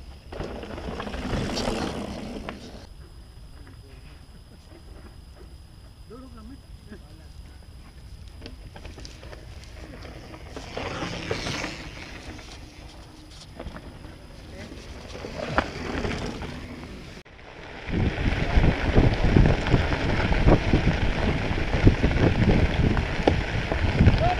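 Mountain bikes rolling down a rocky dirt trail, each pass a short rush of tyre and gravel noise. From about two-thirds of the way in, a loud, steady rumble of knobby tyres crunching on a gravel road, with wind on the microphone, while riding.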